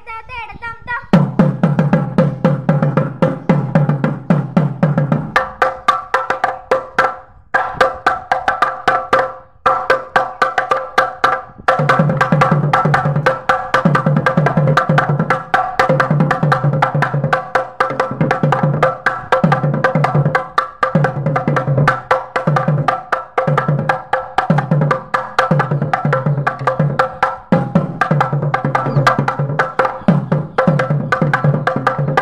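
Thavil, the South Indian barrel drum, played solo: fast, sharp stick strokes over deep drum strokes, starting about a second in. After brief breaks around eight and ten seconds and a short pause near twelve seconds, the deep strokes settle into a steady repeating pattern of about one group a second.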